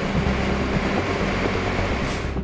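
Steady heavy machinery noise with a constant low engine hum, from a tipped silo truck and the silo plant of an underground concrete plant.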